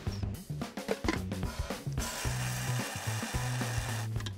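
Coriander seeds pattering into the steel cup of an electric blade spice grinder, then the grinder running steadily from about halfway through, grinding the seeds coarsely. Background music with drums plays underneath.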